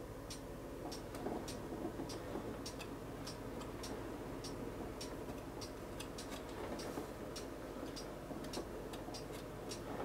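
Faint, irregular light clicks, two or three a second, over a low steady hum.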